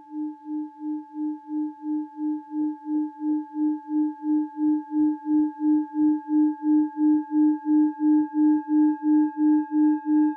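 A singing bowl rubbed around its rim, sounding one low steady tone with fainter higher overtones. The tone pulses about three times a second and slowly swells in loudness.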